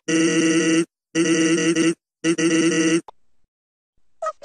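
A held, buzzy, steady-pitched sound, each lasting just under a second, repeated three times with short gaps between.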